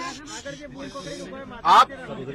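A pause in a man's speech filled by quieter voices talking in the background, with a brief hiss about a second in; the man resumes speaking near the end.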